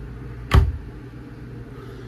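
A single sharp knock about half a second in, over a steady low hum.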